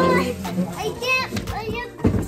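Children's voices: a child's high-pitched exclamations and chatter, rising and falling in pitch.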